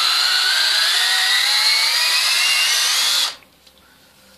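DeWalt 12 V cordless drill running under load, boring into a birch log, its pitch slowly rising; the motor cuts off suddenly about three seconds in.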